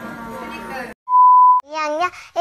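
Chatter and voices in a hall stop abruptly about halfway through. After a brief gap comes a single loud, steady electronic beep about half a second long, then a young child's voice starts.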